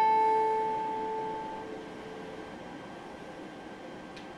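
A single high note on an Epiphone acoustic guitar, plucked just before, rings out and fades away over about two seconds, leaving only faint hiss.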